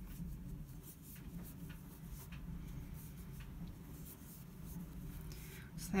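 Faint scratchy rustling of yarn drawn over a metal crochet hook as half double crochet stitches are worked, with small irregular ticks throughout, over a low steady hum.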